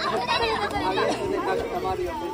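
Several children's and adults' voices chattering over one another outdoors at a somen-nagashi bamboo flume, with a thank-you spoken amid the chatter.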